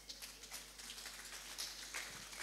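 Faint crackling and rustling noise made of many small, irregular clicks.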